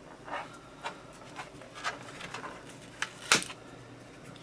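Plastic bottom access panel of an HP ENVY m6 laptop being pried up with a screwdriver and pulled free, stuck slightly by adhesive to the hard drive: faint scrapes and small clicks, with one sharper click a little past three seconds in.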